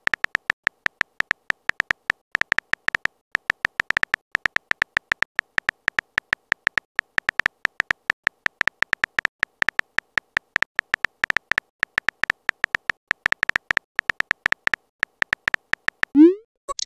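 Simulated phone keyboard typing clicks: a rapid string of short clicks, about five or six a second, one per letter as a message is typed out, with a couple of brief pauses.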